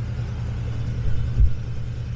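Yamaha VMAX 1700's V4 engine idling steadily with an even low rumble. A brief low thump comes about one and a half seconds in.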